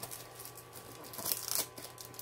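Cellophane shrink wrap being torn open and crinkled by hand, a crackly rustle that grows louder a little past a second in.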